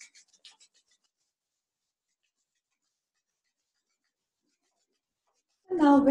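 Near silence: the line is gated to nothing for about five seconds. At the start there are a few faint strokes of palms rubbing together, and a woman's voice starts near the end.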